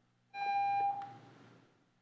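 A single electronic beep on the meeting's call-in phone line. It starts a moment in, holds steady for just over half a second and then fades away.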